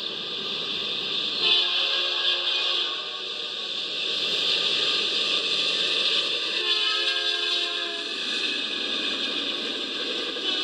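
BNSF diesel locomotive's multi-chime air horn sounding two blasts, each a bit over a second long, the first about a second and a half in and the second near the middle, over a steady hiss. It is played back through a screen's speakers.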